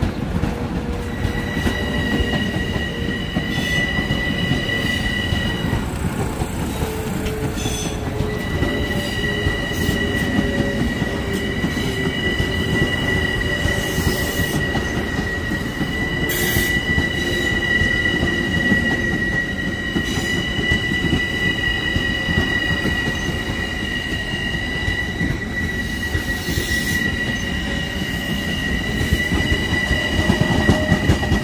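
Long Island Rail Road M7 electric multiple-unit cars rolling past close by: a steady rumble of wheels on rail under a high, steady wheel squeal that drops out briefly a few times. A lower hum slowly falls in pitch over the first dozen seconds, and there are a few brief sharp clicks.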